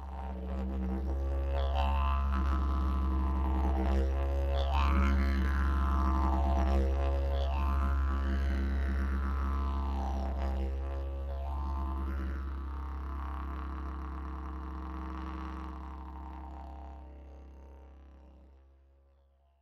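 Didgeridoo music: a steady low drone with its overtones sweeping up and down, fading out over the last few seconds.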